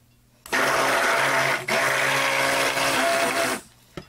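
Stick blender running in a bowl of soap-making oils, mixing white kaolin clay into them. It runs in two pulses, starting about half a second in, with a brief break partway through, and stops shortly before the end.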